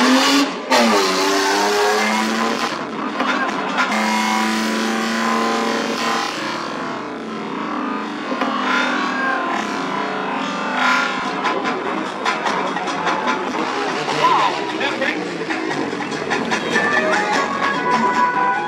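Motor-vehicle engines revving. First a car engine climbs in pitch. After a sudden break just after the start, a quad bike's engine runs and revs as the quad is ridden across the lot and up onto two wheels.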